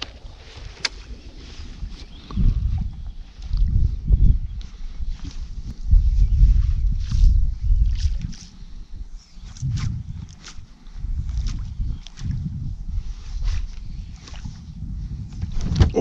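Wind gusting on the microphone and waves lapping against the hull of a fishing boat on choppy open water, rising and falling in surges, with scattered light clicks and knocks.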